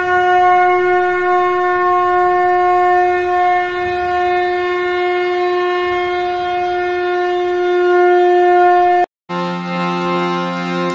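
A conch shell (shankh) blown in one long, steady, unwavering blast that cuts off about nine seconds in. A different held chord of several notes follows briefly near the end.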